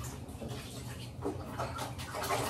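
Water splashing and sloshing in a baby bathtub as an infant is washed, in irregular bursts.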